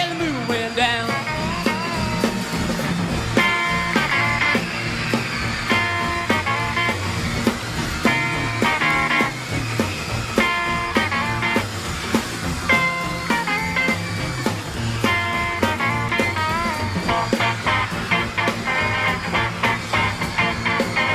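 Instrumental break of an up-tempo rock and roll song: an electric guitar solo with bending notes over a steady bass and drum beat.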